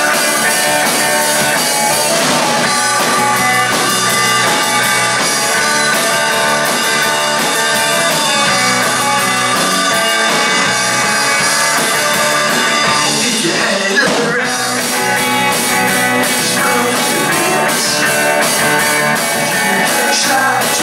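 Live rock band playing a song: electric guitars, keyboard and drum kit, with one sharp loud hit about two-thirds of the way through.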